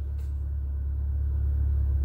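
Steady low rumble of a car cabin, slowly growing a little louder, with one faint click shortly after the start.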